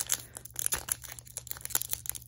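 Foil booster pack wrapper crinkling with irregular crackles as fingers pinch and pull at its top seam, trying to tear it open; the pack will not give.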